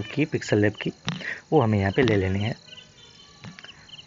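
A man's voice talking briefly in the first half, then a quieter stretch with only a faint, high-pitched background sound.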